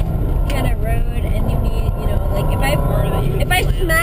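Subaru Impreza 2.5TS's 2.5-litre flat-four engine running steadily at speed, with a constant low rumble of tyre and road noise from the packed-snow road, heard inside the cabin. Brief voices come about half a second in and again near the end.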